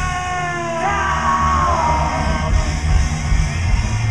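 Psychobilly band playing live, with upright bass, electric guitars and drums. Over it comes a long held yelled vocal note that slides down in pitch after about a second and fades out by about two seconds in.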